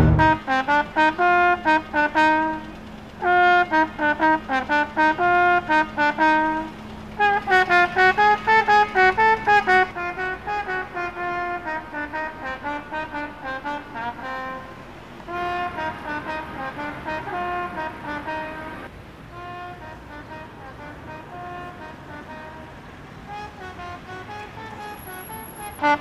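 A solo trumpet plays a slow melody of separate, detached notes in short phrases with pauses between them. The playing grows softer after the first few phrases.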